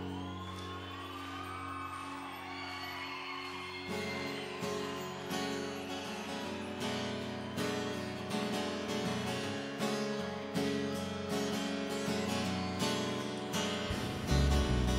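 Live band playing an instrumental intro: sustained chords with high gliding tones, then from about four seconds in a strummed acoustic guitar comes in with a steady beat.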